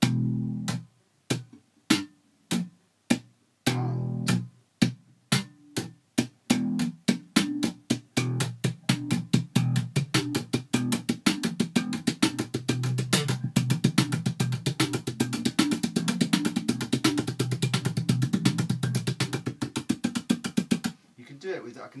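Electric bass guitar played slap style: thumb-slapped notes mixed with left-hand percussive hits, muted taps on the strings, played at even volume. It starts slow and sparse and builds to a fast, even stream of notes and clicks, stopping about a second before the end.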